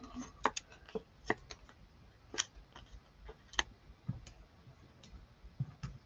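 Light, irregular clicks and taps of fingers handling small pieces of cardstock and foam adhesive dimensionals: peeling off the backings and pressing the pads onto punched card ovals.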